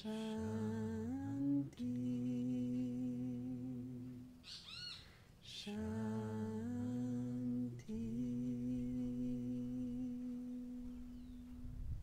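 Voices humming a slow mantra melody in long held notes, each sustained for a few seconds before stepping to another pitch. Midway, in a pause of the humming, a short run of high chirps is heard.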